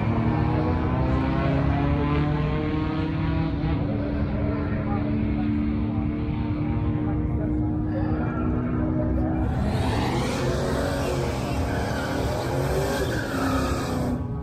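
Drag racing car's engine held at full throttle down the strip, a steady note that ends about nine and a half seconds in; a public-address announcer's voice follows.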